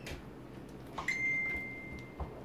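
A single high ping: a clear, steady ringing tone that starts about a second in and fades away over about a second, just after a soft click.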